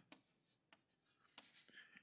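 Faint chalk writing on a blackboard: a few short, quiet strokes as words are written.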